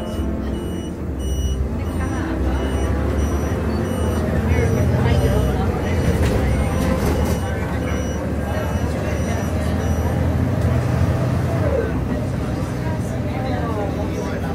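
Bus engine and road noise heard inside the cabin as the bus drives off and picks up speed, a steady low drone that swells twice as it accelerates.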